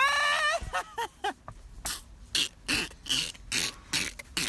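A person's voice making non-word sounds: a short high-pitched squeal at the start, then a run of short breathy bursts, about two or three a second.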